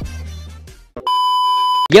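The tail of a short music sting with a low bass fading out, then a single steady electronic beep lasting most of a second that cuts off abruptly.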